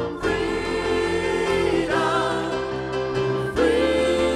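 Gospel worship song sung by several voices together with keyboard and electric guitar accompaniment, the singers holding long sustained notes and moving to a new held note near the end.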